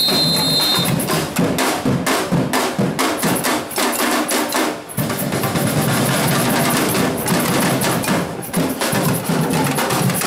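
Batucada drum ensemble playing a fast, dense rhythm on bass drums, snare drums and hand percussion. Just before the middle the bass drums drop out for about a second, leaving the higher drums, then the whole group comes back in together.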